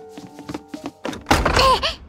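A slow, sad piano melody of held notes with sharp knocks over it, then a loud sudden burst near the end with a short, falling voice-like cry, cut off abruptly.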